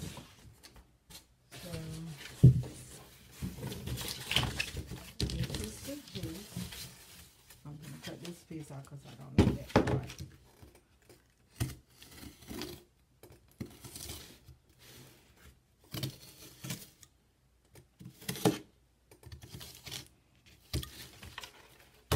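Corrugated cardboard being handled and cut with a utility knife: irregular scraping and slicing, with sharp knocks as the board is moved and set down, the loudest about two and a half seconds in and another near ten seconds in.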